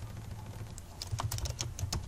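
Typing on a computer keyboard: a run of irregular, separate keystrokes.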